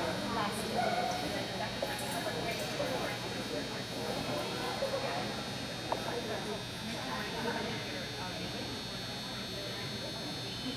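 Ambience of a large indoor arena: faint, indistinct talking over a steady high hum from the hall, with one short knock about six seconds in.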